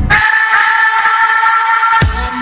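A steady whistle-like chord of several held tones, coming in suddenly as the bass-heavy music cuts out and lasting about two seconds, with no beat under it.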